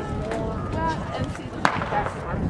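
A single starter's pistol shot, a sharp crack near the end, firing the start of a 400 m race, heard over people talking nearby.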